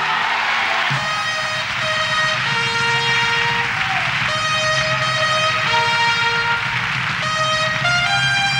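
Orchestral interlude of a copla: a trumpet section plays held chords, each a second or two long and changing about every second and a half, over the band.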